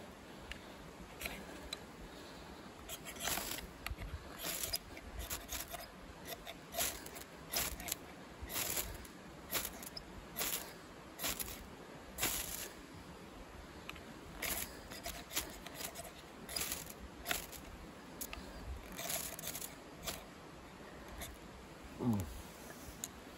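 Ferrocerium rod struck repeatedly against the spine of an ESEE CR 2.5 knife: a short, sharp rasping scrape about once a second, some two dozen strikes. The strikes throw sparks onto a pile of wood shavings to light a fire.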